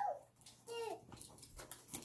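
A toddler's short vocal sound, falling in pitch, a little under a second in, amid a few light taps and clicks of hands handling a toy box and toy cars.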